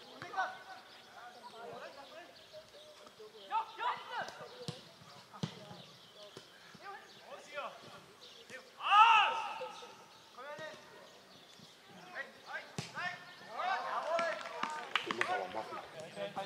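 Football players shouting to each other on the pitch, with one loud call about nine seconds in and several voices together near the end. A few sharp thuds of the ball being kicked come in between.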